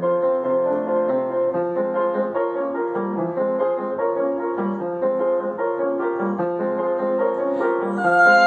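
Upright piano playing a solo interlude in a classical art song: a steady run of quick notes over held notes, with no voice until the singing returns right at the end.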